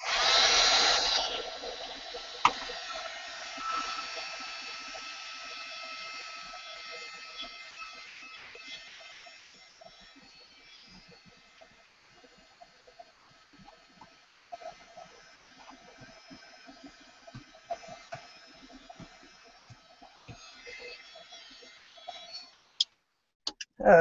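Handheld electric heat tool blowing hot air to dry acrylic paint on a journal page: a steady whirring hiss with a faint motor whine, loudest at first and fading over about ten seconds, then faint until it cuts off near the end.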